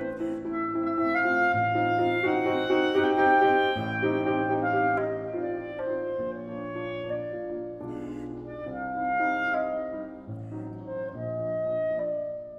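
Clarinet and grand piano playing classical chamber music, the clarinet holding long melodic notes over the piano's chords.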